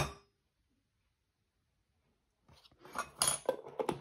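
A metal teaspoon clinks once against a ceramic spice bowl, then a pause of near silence, followed about two and a half seconds in by a few small knocks and clicks of kitchen utensils being handled.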